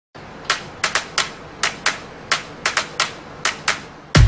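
A series of sharp, dry clicks, about a dozen at irregular intervals with some in quick pairs, over a faint hiss.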